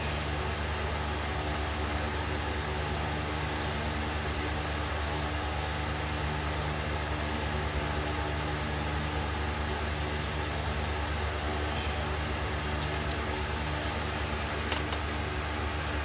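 Steady low hum with background hiss and no speech, a couple of faint clicks near the end.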